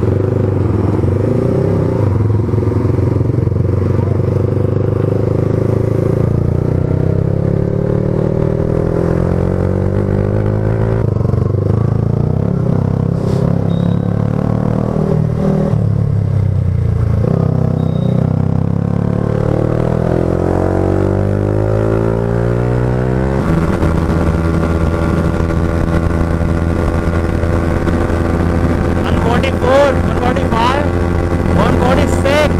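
Yamaha R15's single-cylinder engine heard from the rider's seat, its revs repeatedly rising and falling as it accelerates, shifts and slows. About two-thirds of the way through it changes suddenly to a steady high-rpm run at about 148 km/h, close to the bike's top speed.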